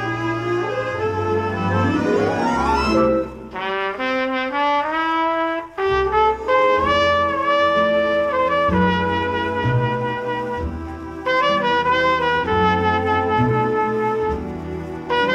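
Jazz orchestra recording: a rising run sweeps up about two seconds in, then a trumpet carries a melody over sustained brass chords and a low bass line.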